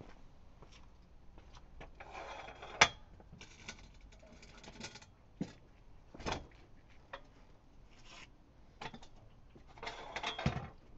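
Scattered footsteps, clicks and metal knocks as a motorcycle is handled and levered up onto an ABBA lift stand, with one sharp knock about three seconds in louder than the rest.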